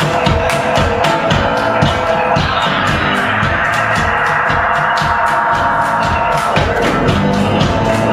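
Live instrumental passage: guitar run through effects pedals over a steady percussive beat. A sustained wash of tone swells through the middle and gives way to a fuller bass line about six and a half seconds in.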